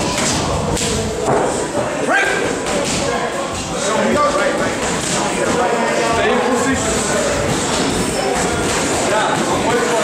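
Sparring boxers' gloves thudding against gloves, arms and headgear, with shuffling footwork on the ring canvas, as irregular thuds over an indistinct background of voices in a large, echoing gym.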